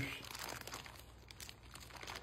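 Faint, irregular crinkling of a plastic frozen-food bag as its cut top flaps are twisted and knotted shut by hand.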